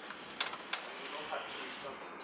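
Laptop keyboard typing: a few sharp key clicks, the loudest about half a second in.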